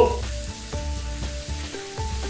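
Chicken legs frying in oil in a pan, with a steady sizzle. Soft background music with held notes plays underneath.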